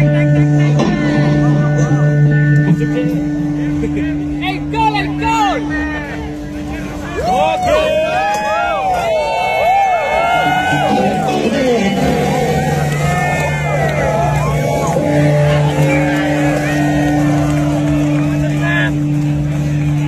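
Vintage two-stroke Vespa scooter engine running, with a steady low note and, through the middle, a run of rising-and-falling revs as the throttle is blipped; crowd voices and stage sound run underneath.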